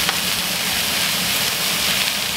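Two NY strip steaks searing in a very hot cast iron skillet, with a pat of butter just added, sizzling steadily as a constant hiss.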